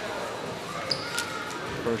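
A basketball bounced on a gym floor, a couple of sharp bounces about a second in, over a large gym's background murmur. These are the dribbles before a free throw.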